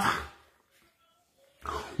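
A man's speech trailing off, a pause of about a second with almost no sound, then his voice starting again near the end.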